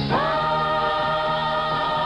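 Music: a group of voices sings, swooping up into a long held chord just after the start.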